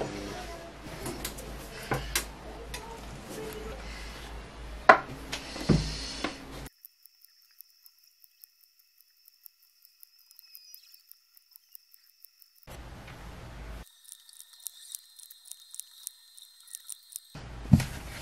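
Clicks and knocks from working a small hand-operated roller press to emboss leather coasters, with two sharp knocks about five and six seconds in. Then come stretches of near silence holding only faint high steady tones.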